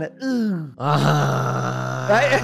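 A man's drawn-out vocal groan: a short falling sound, then one long, level, held tone of well over a second with no words in it.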